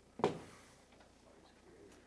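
Faint, distant voice of an audience member answering a question off-microphone, low and muffled in a small room.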